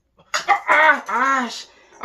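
A man's voice letting out two loud, strained cries in quick succession, each rising and then falling in pitch, right after downing a shot of soju: the exaggerated Korean "kya" exclamation at the liquor's burn.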